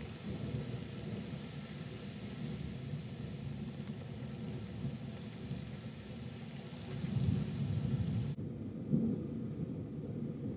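Thunderstorm: steady heavy rain with a low rolling rumble of thunder that swells about seven seconds in. The sound changes abruptly shortly before the end, when the rain's hiss drops away and the low rumble carries on.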